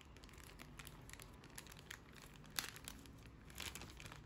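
Faint crinkling of a metallic anti-static shielding bag being handled and unfolded. Small scattered crackles, with a sharper crackle about two and a half seconds in and a brief flurry near the end.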